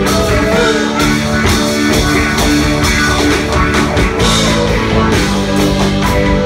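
Live rock band playing an instrumental passage: electric guitar, bass guitar, keyboard and drum kit, loud and steady.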